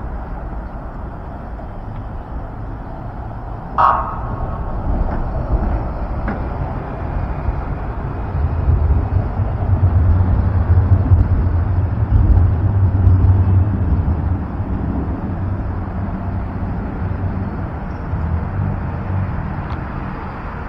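Road traffic on a busy multi-lane city street: a steady low rumble of passing vehicles that grows louder for several seconds in the middle as traffic passes nearer, then eases off. A brief voice is heard about four seconds in.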